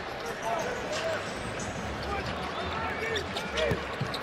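Basketball being dribbled on a hardwood court, heard as scattered bounces over a steady arena crowd murmur, with faint voices in the background.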